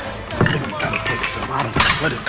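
1980s funk record playing under a spoken skit: voices without clear words over the music, with sharp knocks about half a second in and again near the end.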